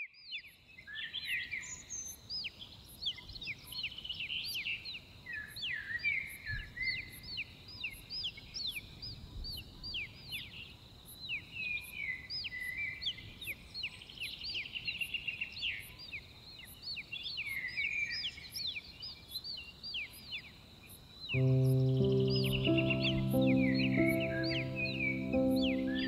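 A nature-sound track of birdsong: several small birds chirping and twittering over each other, with a faint high tick repeating about twice a second. About 21 seconds in, soft sustained music chords come in underneath.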